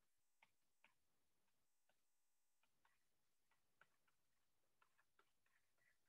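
Near silence, with a dozen or so very faint, irregular clicks from a stylus on a writing tablet as equations are written.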